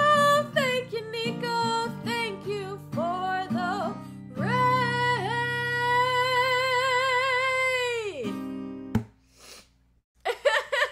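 A woman singing with vibrato to a strummed acoustic guitar, finishing the phrase on one long held note of about four seconds. A single sharp knock follows near the end as the guitar stops.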